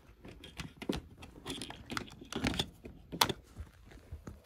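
A plug being pushed into a plastic extension lead and cables being handled: a series of small irregular plastic clicks and knocks, the sharpest just after three seconds in.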